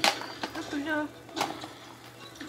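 A brief wordless vocal sound from a person, with a sharp click just before it and another click after it.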